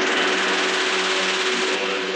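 Electronic music: a bright white-noise swell, opened up by a rising filter sweep, hisses over a steady low synth drone, and its top end cuts off shortly before the end.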